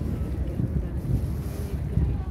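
Wind buffeting the camera's microphone on an open waterfront, a loud uneven low rumble.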